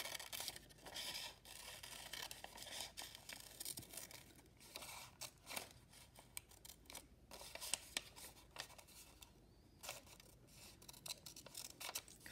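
Scissors snipping through a sheet of paper in a run of short, irregular, faint snips while cutting around the edges of a paper cutout.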